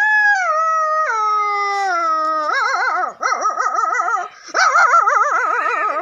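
A boy imitating a dog's howl: a long high howl that steps down in pitch, then a warbling howl that wavers quickly up and down, about four wobbles a second, with a short break just after four seconds.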